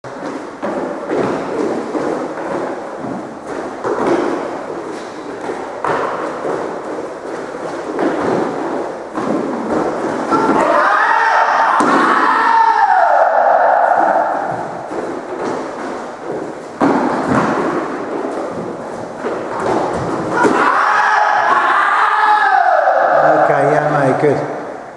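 Feet stamping and thudding on a wooden court floor during karate sparring, in quick, irregular steps. Twice, for a few seconds each, a higher pitched sound rides over the footwork and slides down in pitch.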